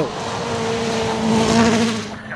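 Hyundai i20 N Rally1 rally car's engine held at high revs, a steady note that grows louder and then eases slightly near the end.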